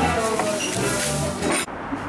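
Music with held notes playing, cut off abruptly about one and a half seconds in and replaced by steady outdoor street and traffic noise.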